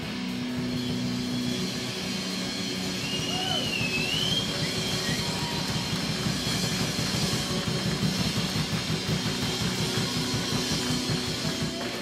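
A metal band playing live and loud: distorted electric guitars and bass over a drum kit beating fast. A brief wavering high note rises and falls about three seconds in.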